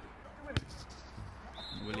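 A single sharp thud of a football being struck, about half a second in, over faint background noise from the pitch.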